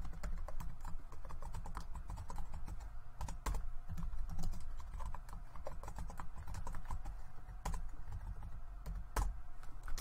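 Typing on a computer keyboard: a steady run of quick, irregular key clicks, with a few louder strokes standing out.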